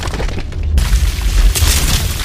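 Cinematic logo-reveal sound effect: a deep, sustained boom and rumble of breaking stone, with a burst of crashing, crumbling debris coming in just under a second in.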